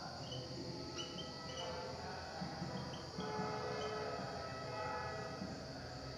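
Marker pen writing on a whiteboard: short, faint, high squeaks as the letters are written, over a low steady background rumble.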